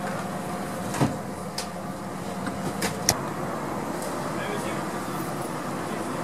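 Ambulance idling with a steady hum, broken by sharp clacks of a stretcher being loaded into the back: one about a second in and two close together near three seconds, the second of these the loudest.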